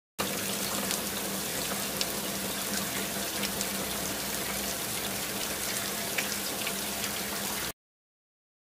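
Bubbling, fizzing water sound effect: a steady hiss dotted with small pops, which cuts off suddenly near the end.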